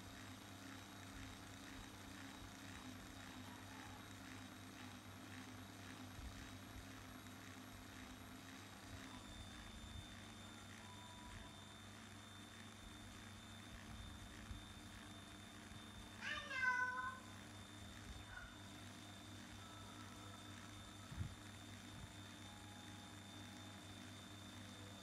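Faint steady hum of a cordless drill turning the drive shaft of a model truck's axle rig, its tone shifting slightly about nine seconds in. A cat meows once, briefly, a little past the middle.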